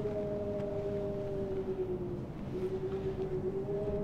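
A sustained ambient drone of two steady pitched tones over a low rumble. The lower tone sags and breaks off briefly about halfway through before coming back, and the upper tone fades out for a while in the second half.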